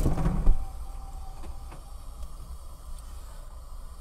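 Low, steady engine and road rumble heard from inside a moving car. A louder burst of noise fills the first half-second and then falls away, and a few faint clicks follow.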